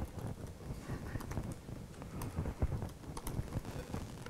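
Faint keystrokes on a computer keyboard: a few scattered clicks over a low, steady room noise.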